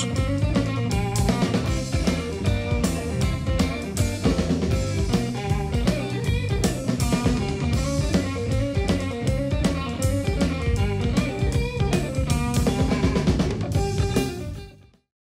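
Blues-rock band playing: electric guitar, bass guitar and drum kit over a steady beat.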